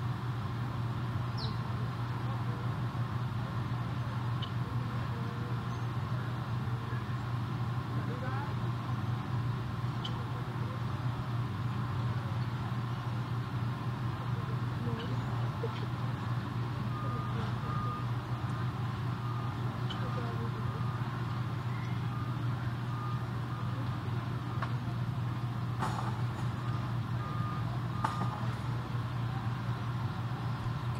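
Steady low hum with faint background ambience, and a short high electronic beep repeating about once every three-quarters of a second from a little past the middle to near the end.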